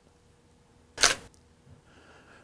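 A DSLR camera's shutter firing once, about a second in: a single quick click-clack of mirror and shutter.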